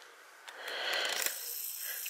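Faint whir of a camcorder's zoom motor as the lens zooms out, starting about half a second in and running steadily after that.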